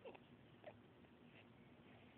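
Two faint, short baby squeaks over near-silent room tone: the first falls in pitch, the second comes about half a second later.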